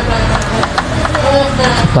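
Steady background rumble of road traffic from a nearby street, with a faint pitched engine-like tone.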